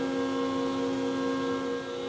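Electric motors and hydraulic pumps of a hydraulic rod-pumping unit running steadily after start-up, a steady hum made of several constant tones.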